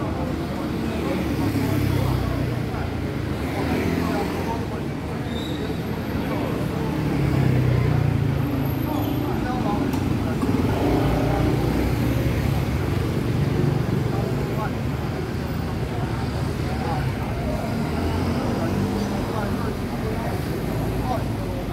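A group of men's voices chanting together, over steady street traffic noise.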